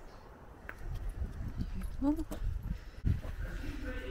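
Footsteps on a paved path with irregular low thuds, and a short rising voice sound about two seconds in.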